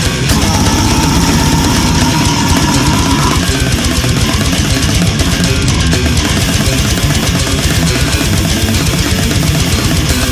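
Brutal death metal: heavily distorted guitars over fast, dense drumming, with a held high note over the first three seconds or so.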